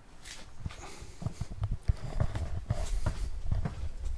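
Footsteps of a person walking, irregular soft thuds growing louder as they come close, with a few brief rustles.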